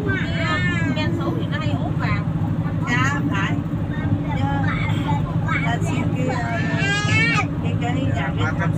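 Steady low engine and road drone heard from inside a moving vehicle's cabin, with people's voices talking over it.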